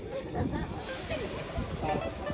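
People's voices talking, with a hiss that grows louder about a second in.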